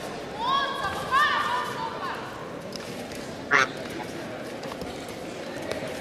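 Voices shouting over a steady background hubbub: two loud drawn-out calls in the first two seconds, then a short sharp shout about three and a half seconds in.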